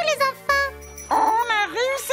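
Bright cartoon transition jingle: quick swooping, whistle-like sound effects gliding up and down over a steady bass note.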